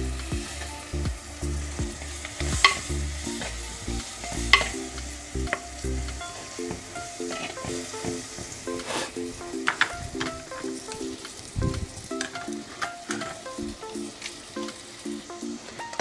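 Onion and tomato masala sizzling in hot oil in a clay pot, with a metal spoon stirring it and scraping and knocking against the clay sides in a string of sharp clicks. Soft background music runs underneath.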